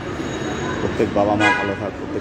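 A vehicle horn gives one short toot about one and a half seconds in, over people talking.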